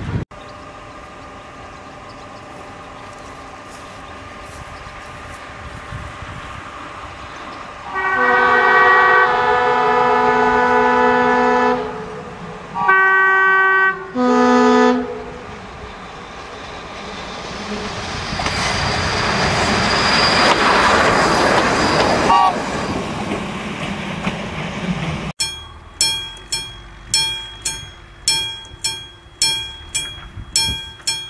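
Vintage diesel railcar sounding its horn: one long blast of several tones about a third of the way in, then two short blasts. It is followed by the railcar approaching and passing, with a swelling rush of engine and wheel noise and a brief wheel squeal.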